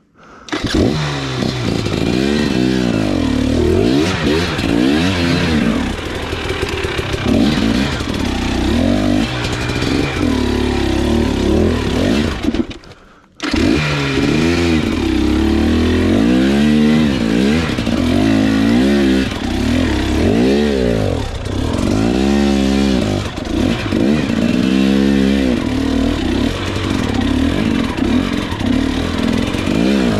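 KTM 300 XC two-stroke single-cylinder enduro motorcycle engine, ridden hard and revving up and down again and again as the rider works the throttle. There is a short, sudden break in the sound about thirteen seconds in.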